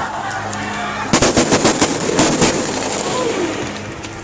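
Gunfire: a rapid run of about a dozen shots in two close bursts, starting about a second in.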